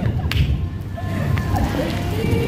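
Strong wind buffeting the microphone: an uneven low rumble.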